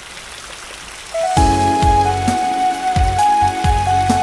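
Rain sound effect, a soft even patter; about a second in the song's instrumental intro comes in, a sustained high melody line over a beat of low bass hits.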